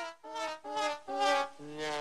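Comic brass sound effect in the style of a sad trombone: a run of short horn notes, about two a second, dropping lower near the end. It is a musical cue for a letdown.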